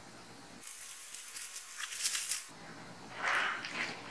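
A plastic shipping pouch being cut open with scissors and handled: hissy crinkling in two stretches, the first about two seconds long, the second shorter about three seconds in.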